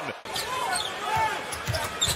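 Basketball game sound on a hardwood arena court: a ball bouncing, with a couple of sharp knocks near the end, under faint voices.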